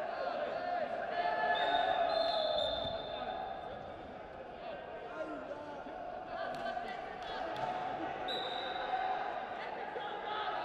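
Voices talking and calling out in a large echoing sports hall, with two brief high squeaks, one about one and a half seconds in and one near the end, and a few light knocks in between.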